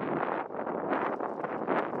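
Wind buffeting the microphone: an uneven rushing noise with many short, irregular gusts.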